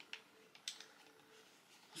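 Near silence: room tone with two faint brief clicks in the first second.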